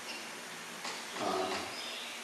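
A man's short, hesitant 'um' into a microphone over a steady background hiss, with a couple of faint high squeaks.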